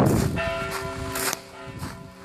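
The two middle bells of Strängnäs Cathedral, tuned to D and F, swinging and ringing together: several strikes in two seconds over their overlapping, sustained hum. This is helgmålsringning, the Saturday-evening ringing that marks the start of Sunday.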